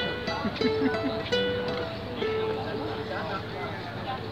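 Acoustic guitar playing the closing notes of a song: a few plucked notes and chords ring and die away, growing quieter. People talk in the background.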